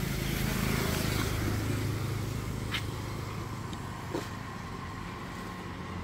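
A road vehicle passing and moving away: a steady engine and road noise that slowly fades, with a faint click or two.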